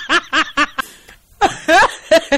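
A person laughing in a run of short, quick bursts, about five a second, pausing for a moment halfway through and then starting again.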